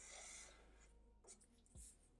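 Faint felt-tip marker strokes on paper: one longer stroke at the start, then short strokes past the middle.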